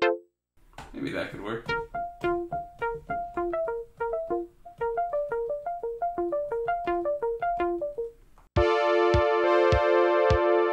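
Synthesizer arpeggio programmed on a Novation Circuit Tracks: short plucked notes stepping up and down in a repeating pattern, about three or four a second, after a brief noise swell near the start. Shortly before the end a sustained chord and a steady kick drum come in with it.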